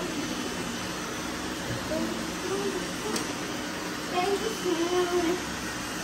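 Seven robot vacuums running together on a mattress, their motors and brushes making one steady noise.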